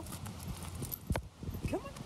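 Footsteps and scattered clicks on an asphalt driveway while walking a dog on a leash, with one sharp click just past a second in.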